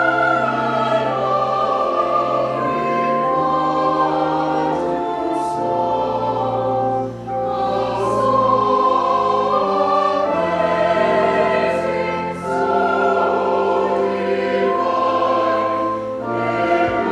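A mixed church choir of men and women singing an anthem in held, sustained notes, with brief breaths between phrases about seven and twelve seconds in.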